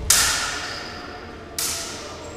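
Two clashes of steel training sabres, a loud one right at the start and a quieter one about a second and a half in, each ringing out and echoing in a large sports hall.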